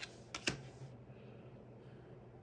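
Three quick, sharp clicks within the first half second, the last one the loudest: tarot cards being handled on a wooden table. A faint, steady low hum underneath.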